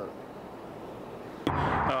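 Steady background hiss with no distinct events. About one and a half seconds in it cuts abruptly to a man speaking outdoors, over a low rumble.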